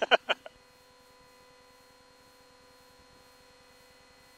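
A short laugh over the aircraft radio, then near silence with only a faint steady electrical hum on the line.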